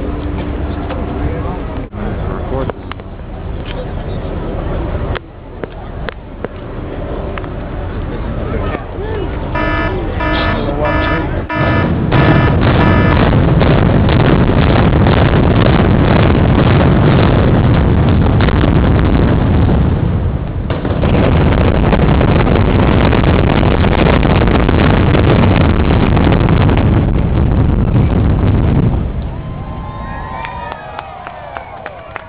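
Building implosion: a quick row of short, evenly spaced signal tones, then from about twelve seconds in a long, loud volley of demolition charges cracking in fast succession. It runs into the heavy rumble of the high-rise hotel collapsing, which drops away shortly before the end. Crowd chatter sits underneath at the start.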